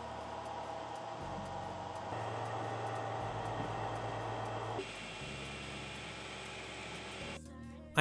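3D printer running at a low level: a steady hum and hiss from its cooling fans and stepper motors, changing character about a second in and again near five seconds.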